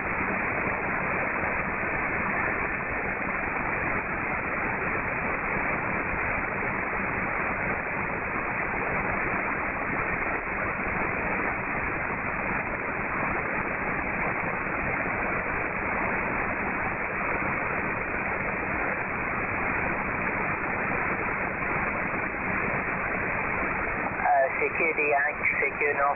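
Steady static hiss from a Perseus software-defined radio receiving an empty 20-metre upper-sideband channel while a CQ call waits for replies, with a faint low hum under it. A voice comes back through the noise near the end.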